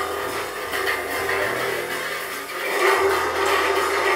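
Live improvised ensemble music: held low bass notes that shift in pitch under a scratchy, noisy percussion texture worked on a cymbal, growing louder about three seconds in.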